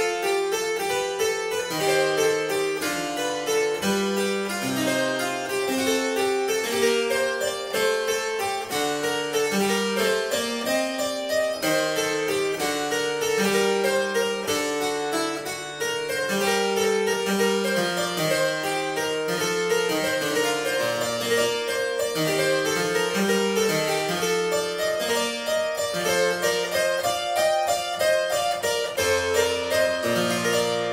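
Two-manual harpsichord playing a continuous partimento realization: a stepwise bass line with full chords above it. Near the end it closes on a held low chord that starts to die away.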